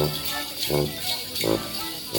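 Accordion playing a lively Morris dance tune in a steady beat, with bells jingling continuously over it. A man's voice speaks over the music near the end.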